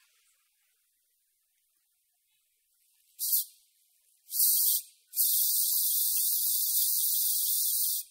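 Aerosol hairspray can spraying, starting about three seconds in: two short sprays, then one long spray of about three seconds that stops suddenly.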